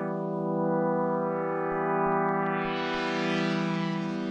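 Sustained synth pad chord from Harmor playing the AeroPad Patcher preset, its tone swept by the low-pass filter cutoff. It goes dark in the first second, opens up bright around two to three seconds in, then dulls slightly again.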